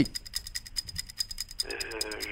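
Fast, even ticking from a quiz countdown timer sound effect, with a faint steady high tone under it. Near the end, a contestant's voice comes in thinly over a telephone line.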